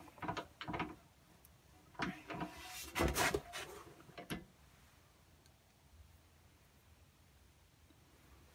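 A drill press used as a pen press: the quill is lowered to push a pen's parts together, giving a few short mechanical scrapes and creaks in the first half. Fabric rubs close to the microphone at the same time.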